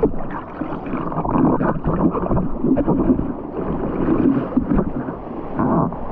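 Broken-wave whitewater rushing and splashing close around a surfboard in the shallows, in irregular surges.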